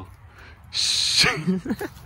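A person laughing: a sharp breathy exhale about two-thirds of a second in, then a few short bouncing voiced laughs.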